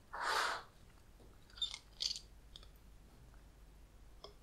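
Glass jars, a glass beaker and a metal strainer being handled on a tabletop. A short rushing noise lasts about half a second at the start, then comes a few faint light clicks and taps.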